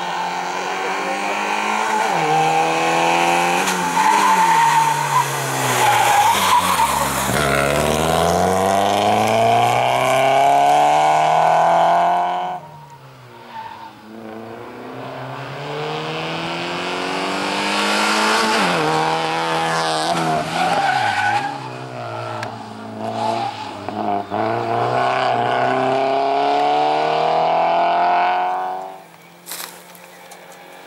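Small hatchback race car's engine revving hard and falling back again and again as it accelerates and brakes between slalom cone gates, with tyres squealing in the tight turns. The sound cuts off suddenly about twelve seconds in, then the car is heard again, revving up and down, until another sudden cut near the end.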